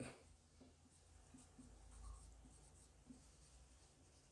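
Marker pen writing on a whiteboard, very faint: a scattering of short light strokes as the words are written out.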